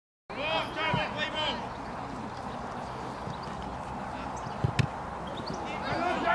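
Shouted calls from players on a rugby field. A little before the end come two sharp thumps close together, a boot kicking the rugby ball.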